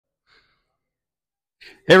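Near silence, then a short, faint intake of breath about a second and a half in, just before a man starts speaking with "Hey" at the very end.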